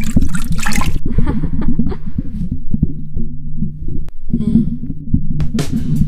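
Underwater sound effect: dense low rumbling and bubbling over a steady low hum, with louder bursts of bubbling splashes in the first second and again near the end.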